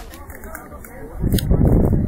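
Faint voices of spectators chattering around an outdoor football pitch. A little over a second in, a loud low rumble comes in and covers them.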